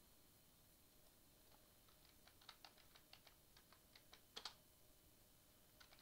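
Faint computer keyboard typing: a run of keystrokes starts about two seconds in and ends with a heavier double keypress.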